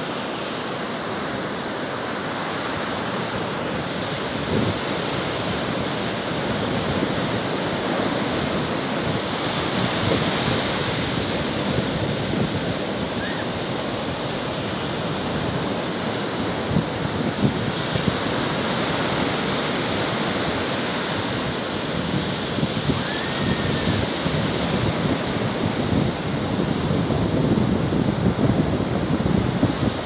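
Sea surf breaking over rocks and washing up a sandy beach: a continuous rush of water that swells and eases as the waves come in.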